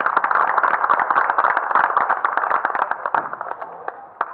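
Audience applauding: many hands clapping together, thinning out and dying away near the end.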